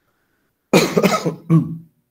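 A man coughs twice, loudly, about a third of the way in: a longer rough cough followed by a shorter one.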